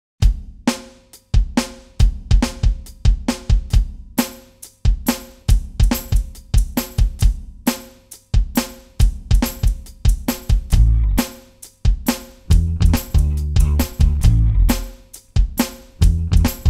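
A repeating drum beat of kick, snare and hi-hat, built up on a looper. A deep bass line joins in about eleven seconds in.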